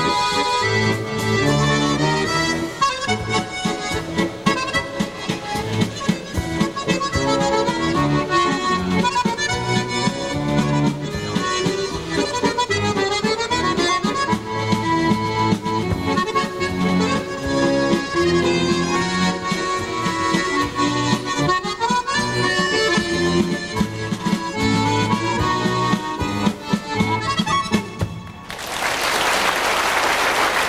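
Chromatic button accordion playing a valse musette, with quick melodic runs over a steady bass and chords. The music stops about two seconds before the end and applause breaks out.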